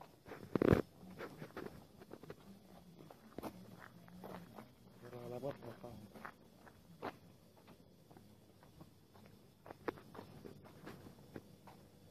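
Footsteps on a wet sidewalk, with the knocks and rubs of a handheld phone being carried; a loud bump about half a second in.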